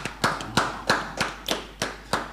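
Hands clapping in a steady run of sharp claps, about three a second, applauding the guest's introduction.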